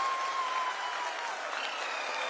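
A crowd of scientists applauding and cheering in a control room: a dense, steady clatter of many hands clapping. One long high note is held above it, slowly sinking.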